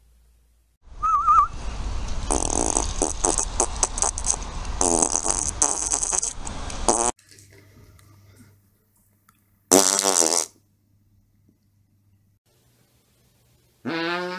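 Dog farting: a long, loud run of rapid, buzzy flatulent bursts lasting about six seconds, then stopping abruptly. A brief call falling in pitch follows a few seconds later.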